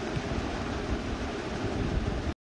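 Steady background hiss of room and microphone noise, even and unchanging, with no other distinct sound.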